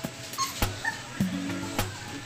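A one-month-old American Bully puppy gives a couple of brief, high whimpers, about half a second and a second in, over background music with a steady beat.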